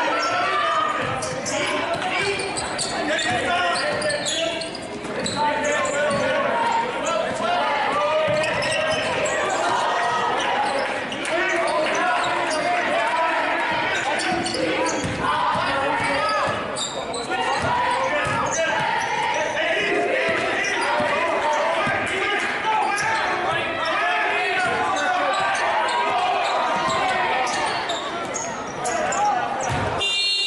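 Live high school basketball play in a gym: a ball bouncing on the hardwood court and sneakers on the floor, under a steady mix of spectators' and players' voices that echo in the large hall.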